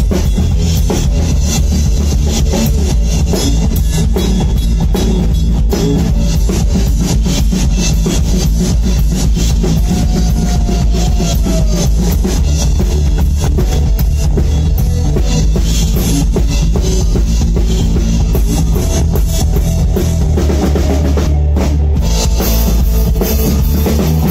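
Live blues band playing, with the drum kit to the fore (bass drum and cymbals) over electric bass guitar.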